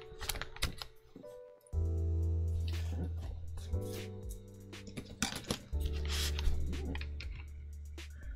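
Plastic keycaps being pressed back onto a mechanical keyboard's switches: a few scattered sharp clicks, over soft background music with long low sustained notes.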